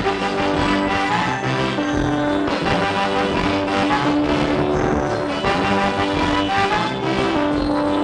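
Live band playing an instrumental passage, with a brass section including trombone holding long notes over the rhythm of the band.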